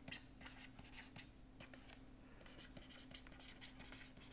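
Faint stylus taps and scratches on a pen tablet while an equation is handwritten, a run of many short clicks and strokes over a low steady hum.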